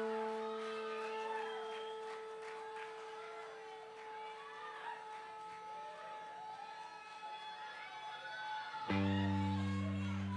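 A guitar chord played through the PA is struck and left to ring, fading slowly over several seconds. A new, fuller chord is struck about nine seconds in.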